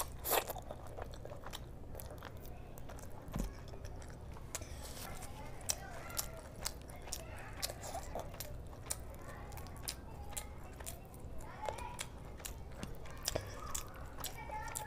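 Close-miked eating of rice, meat curry and crisp papad: a loud crunch just after the start, then wet chewing with many small clicks and lip smacks.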